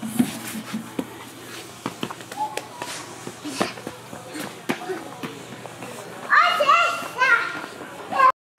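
A toddler's voice calling out about six seconds in, over scattered light taps of her hands and small feet on a hard floor as she crawls and then runs.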